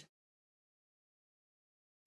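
Near silence: the soundtrack is silent, with no sound at all.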